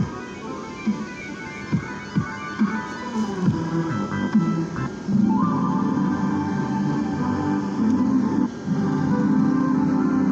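Light-show music playing from the built-in speaker of an Orchestra of Lights controller. About five seconds in the music turns fuller and steadier, with a brief dip about eight and a half seconds in.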